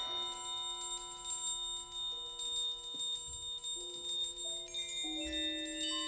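Slow, hushed contemporary ensemble music of ringing, bell-like metal percussion tones that hang on and overlap, with a new note entering about once a second.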